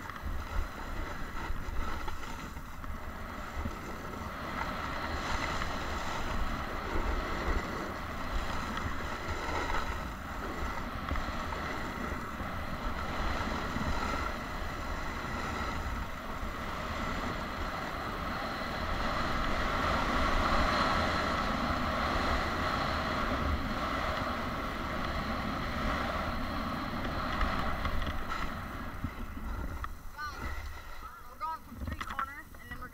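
Snowboard sliding and carving down a groomed slope, the base and edges scraping and hissing on the snow, mixed with wind rushing over the action camera's microphone. The noise is steady throughout and grows louder around twenty seconds in.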